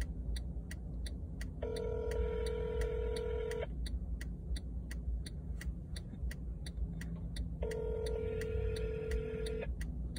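A steady ticking about twice a second, with two electronic tones, each held about two seconds and starting six seconds apart, over a low steady rumble.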